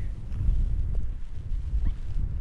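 Wind buffeting the microphone: a low, irregular rumble.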